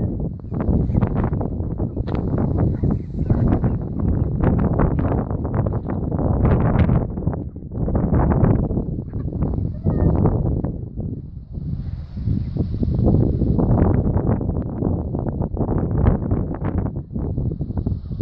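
A flock of chickens clucking, with wind buffeting the microphone in a steady low rumble.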